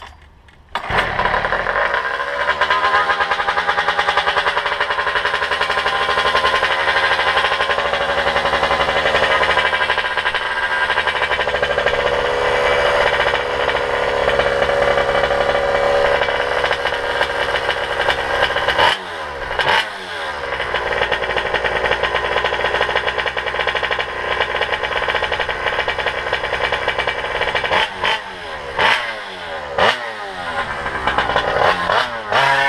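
Goped GSR46 two-stroke engine with a reed-valve intake and ported cylinder catching about a second in on a cold first start of the day, then running at a steady high buzz. Its revs drop and pick back up twice in the second half.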